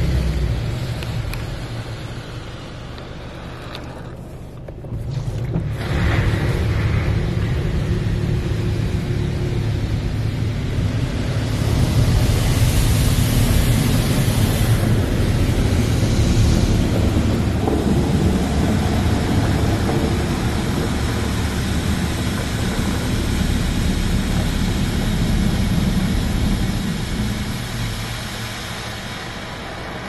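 Belanger Vector in-bay automatic car wash spraying water over the car, heard from inside the cabin as a steady rushing hiss over a low machine rumble. The spray eases off briefly a few seconds in, comes back louder and hissier around the middle, and fades near the end.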